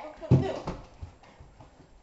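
Hurried footsteps on a hard floor: one loud thump about a third of a second in, then a few quick steps that fade.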